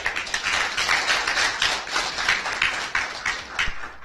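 Audience applause: many hands clapping at once, starting suddenly and keeping an even level.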